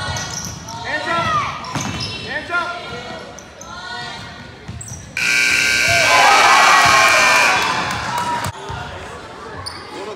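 Gymnasium scoreboard horn sounding for about three seconds from about five seconds in, as the game clock runs out to zero; it is the loudest sound here. Before it, a basketball bounces on the hardwood court amid shouting voices, echoing in the large gym.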